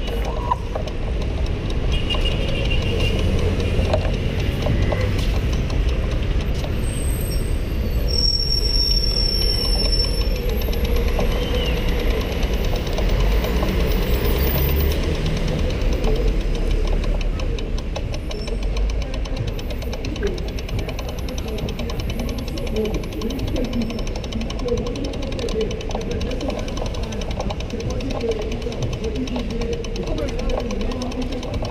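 Busy city-street ambience: a steady low traffic rumble, heaviest in the first half as a bus passes close by, then easing, with voices of passers-by.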